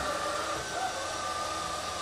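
Aldi Stirling robot vacuum cleaner running, a steady whir of its motor and fan with a thin high whine.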